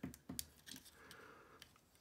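A few faint, scattered clicks of a plastic action figure's arm joint and gear-linked fold-out blade being straightened by hand.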